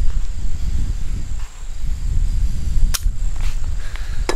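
Heavy shears cutting through a sheet of leather, with one sharp snip about three seconds in, over a steady low rumble.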